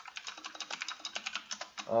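Fast typing on a computer keyboard: a quick, even run of key clicks that stops as a voice comes in near the end.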